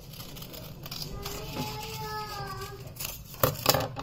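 Scissors cutting through a sheet of paper: quiet snips with paper rustling, then two louder, sharp rustles of the paper close together near the end as the cut is finished.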